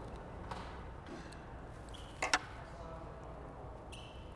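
Quiet room tone with a brief, sharp double click about two seconds in: fly-tying scissors snipping material at the fly in the vise.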